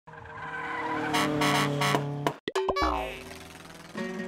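Intro sound effects for an animated title: a car-like engine tone with three loud hits, a sudden brief cutout just past halfway, then clicks and a falling glide as music takes over.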